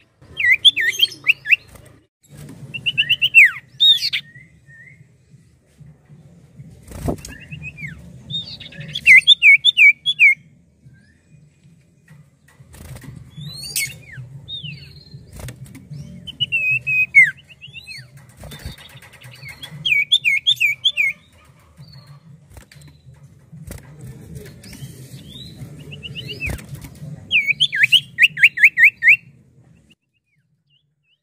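A caged cipoh (common iora) singing: bursts of four to eight rapid whistled notes, each a quick downward sweep, repeated every few seconds. A low steady hum runs underneath, with a couple of sharp knocks.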